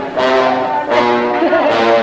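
Film soundtrack music: brass instruments play two held chords, the second starting about a second in.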